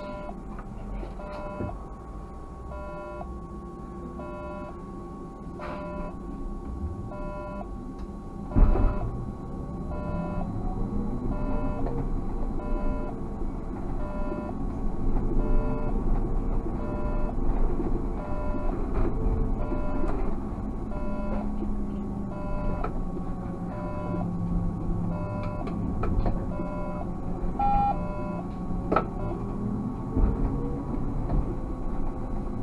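Car engine and road noise in a moving car, rising in pitch as it speeds up through the second half, under a steady train of short electronic beeps a little faster than one a second. There is a sharp thump about nine seconds in.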